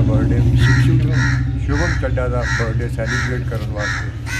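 A bird giving a series of about six harsh calls, one every half-second or so, over faint voices and a steady low hum.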